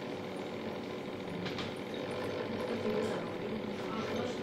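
A steady mechanical hum, like a small motor running continuously.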